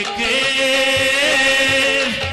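Men singing long held notes of a Sudanese song, with a few hand-drum strokes beneath.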